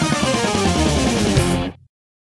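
Guitar-driven instrumental rock with a fast electric guitar run falling in pitch over bass and drums. A cymbal crash comes just before the music cuts off suddenly near the end.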